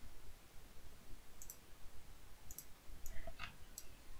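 A few faint computer mouse clicks, about four sharp ticks spaced irregularly, as files are downloaded and opened on the computer.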